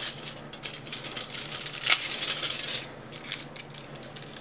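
Aluminum foil crinkling and crackling in the hands as it is wrapped around a drinking straw and pinched, a run of irregular small crackles and clicks.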